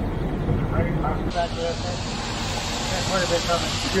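Ready-mix concrete truck's diesel engine running steadily as a low rumble, with faint voices of the crew. About a second in, a steady hiss joins it.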